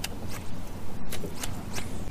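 About five short swishes and rustles, spaced unevenly, as a fishing rod is snapped in quick twitches to work a jerkbait, over a low, steady rumble.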